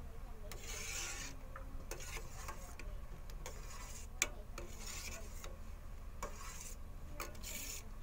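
A ladle scraping and rubbing against the bottom and sides of a stainless steel pot while stirring a green jelly mixture, a rasping stroke about every second and a half, with a sharp metal click about four seconds in.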